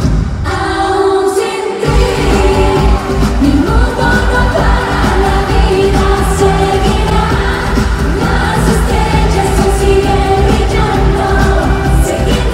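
Live pop music at a concert: a dance beat whose bass and drums drop out for the first couple of seconds and then kick back in, with singing over the band.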